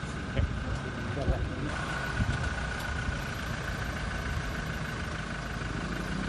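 A Toyota MPV's engine idling steadily.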